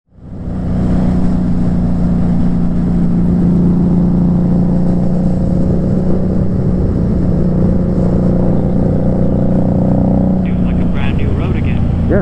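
Motorcycle engine running at a steady cruise, one even pitch throughout, with road and wind noise; it fades in over the first half second.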